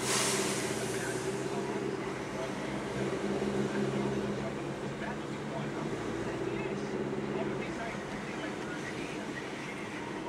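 Car cabin noise while driving: a steady engine drone and road noise, with a short burst of hiss at the very start. A car radio plays underneath, its voices too low to make out.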